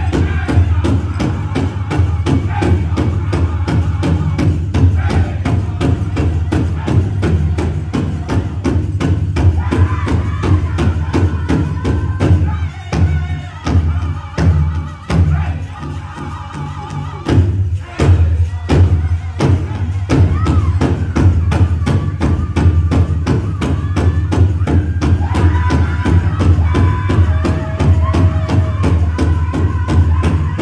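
Powwow drum group drumming a steady, fast beat on a big drum with singing over it. About twelve seconds in, the drumming thins to scattered beats for a few seconds, then comes back strongly.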